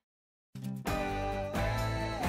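About half a second of dead silence, then a news channel's title theme music starts and fills out into held, sustained notes over a steady low bass.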